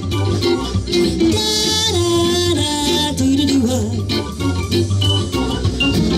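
Live band playing an instrumental passage: drums keeping a steady beat under bass and an organ-like keyboard line.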